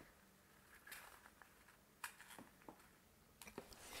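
Near silence with a few faint, scattered taps and rustles of small corrugated cardboard pieces being handled on a table.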